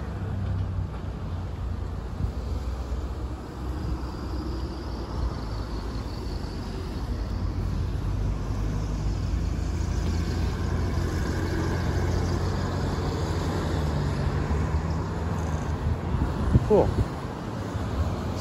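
Road traffic passing through an intersection: a steady low rumble of car engines and tyres that builds gently toward the latter half, with a brief sharper sound near the end.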